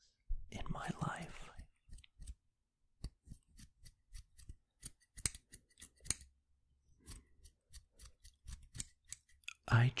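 A pair of scissors snipping: a run of short, sharp snips at an uneven pace, about one or two a second.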